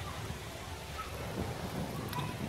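Wind rumbling on the microphone: a steady, uneven low rumble under a light hiss.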